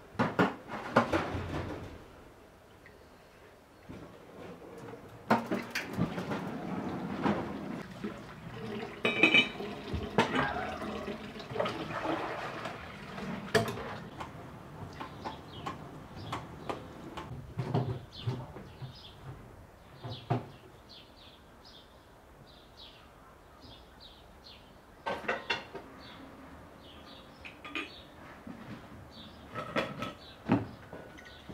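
Washing up at a steel kitchen sink: a cup and dishes clinking and knocking against the basin, with tap water running. The clatter is busiest in the first half and returns briefly near the end.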